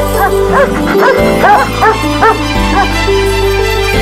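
A dog yipping in a quick run of short, high barks, about two or three a second, stopping a little past halfway, over film background music with long held notes.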